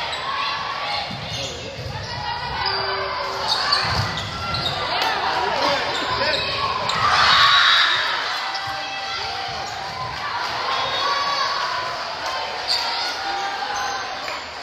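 Indoor volleyball rally in an echoing gym: a serve and sharp hits of the ball, with players' shouts and calls throughout, loudest about halfway through.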